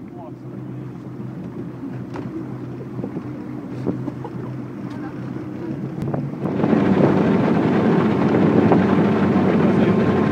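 Chaparral motorboat's engine running with a steady low hum, then getting suddenly louder about six and a half seconds in as the boat picks up speed, with rushing wind and water noise.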